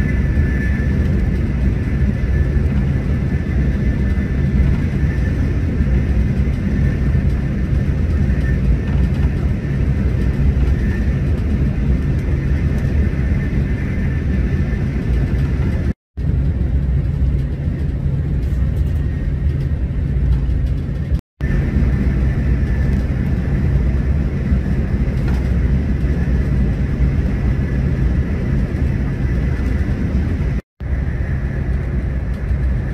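Steady running noise inside a Renfe high-speed train cruising at speed: a deep, even rumble with a faint high whine above it. The sound cuts out for an instant twice.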